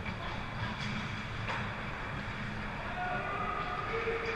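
Ice-rink ambience during hockey play: a steady low rumble with a few faint clicks and scrapes of skates and sticks on the ice early on.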